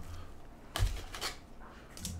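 Trading cards and plastic being handled: a short rustle about a second in and a fainter one soon after, over a low steady hum.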